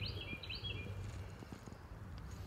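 A small songbird chirping: a quick run of short, high notes in the first second or so, then fainter, over a steady low outdoor rumble.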